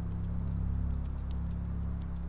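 A low, steady musical drone of several held tones, with faint scattered clicks above it.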